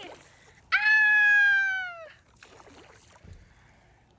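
A person's long, high-pitched squeal, starting a little under a second in and lasting about a second and a half, falling slightly in pitch. Afterwards, faint splashing and trickling of water.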